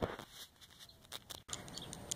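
Corn leaves brushing and rustling against a handheld camera in scattered soft crackles. The sound cuts off sharply a little past halfway, leaving only faint background.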